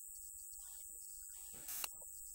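Steady low electrical hum on the recording, with a thin high-pitched whine above it. Faint fragments of a man's voice come through twice, with a brief click near the end.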